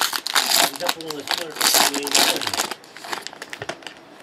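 Foil wrapper of a jumbo baseball card pack crinkling and tearing as it is opened by hand, with a man talking over the first part. Quieter scattered crinkles near the end.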